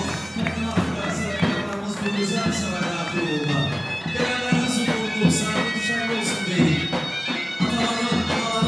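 Live band music with a reedy wind-instrument melody over a steady drum beat.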